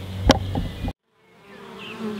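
Honeybees buzzing around a hive entrance, with one sharp knock about a third of a second in. The sound cuts out for a moment just before halfway, then the buzzing fades back in.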